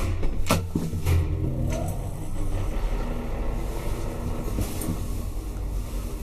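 1962 KONE traction elevator starting and travelling, heard from inside the car: a few sharp clicks, then under a second in the hoist machinery sets in with a steady hum and rumble that holds as the car moves.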